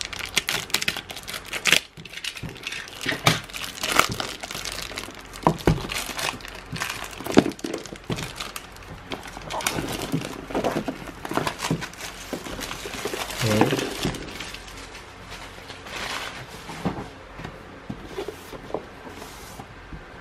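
Clear plastic shrink wrap being torn and peeled off a cardboard box by hand, crinkling and crackling in irregular bursts throughout.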